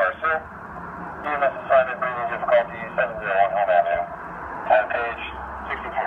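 Dispatch page coming over a fire-department radio's speaker-microphone: a dispatcher's voice reading out the call's dispatch information, narrow-sounding over steady radio hiss.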